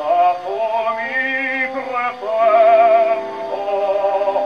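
Operatic baritone singing with vibrato in short phrases, with orchestra, from an early shellac record played on a horn gramophone; the sound is thin, with almost no treble.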